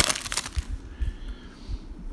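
Plastic trading-card pack wrapper crinkling in the hands, loudest in the first half second, then quieter rustling with a few soft bumps.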